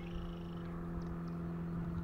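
Small propeller airplane flying overhead at a distance, its engine giving a steady, even drone.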